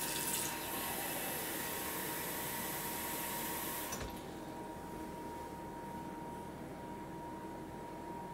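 Kitchen tap running, filling a cup with a cup of water for the batter, for about four seconds, then turned off with a small knock. Afterwards only quiet room tone with a faint steady high-pitched hum.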